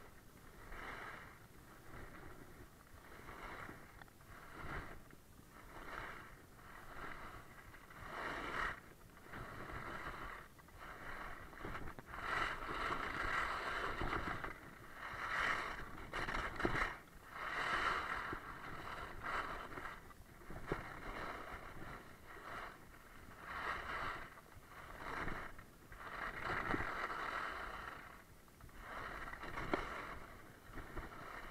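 Skis scraping over hard, icy snow, a swell of edge scrape with each turn every one to two seconds, loudest in the middle stretch. The skis are blunt, so their edges skid on the ice rather than grip.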